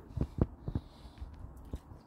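Close-up mouth sounds of a man biting and chewing a bacon sandwich: a few short, soft clicks and smacks spread across the moment.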